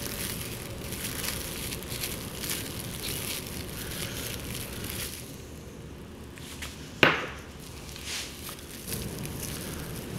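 Plastic cling film crinkling as it is gathered up and twisted closed around a raw egg, with a single sharp knock about seven seconds in.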